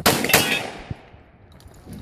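Two shotgun shots in quick succession, about a third of a second apart, with a long echo fading over about a second afterwards.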